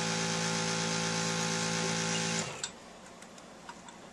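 Suction pump of an egg-retrieval (follicle aspiration) setup running with a steady hum, then switching off abruptly about two and a half seconds in, followed by a click and a few faint ticks.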